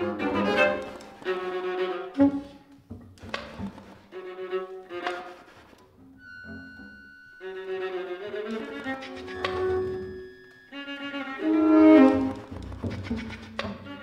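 Contemporary chamber music on bowed strings, played in short fragmented gestures with gaps between them. A quiet stretch of thin, high held tones comes about six seconds in, followed by a denser passage that is loudest near the twelve-second mark.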